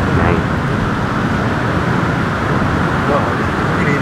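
Steady rushing outdoor noise of wind and surf, with a couple of brief faint voices.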